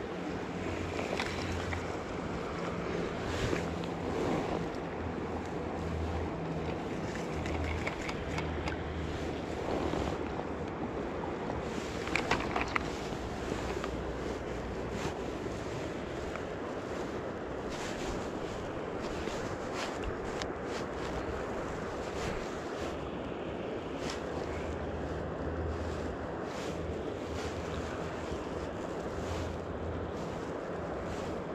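Steady rush of a shallow river riffle flowing around the wader's legs, with wind buffeting the microphone in uneven low gusts. A brief cluster of clicks comes about twelve seconds in.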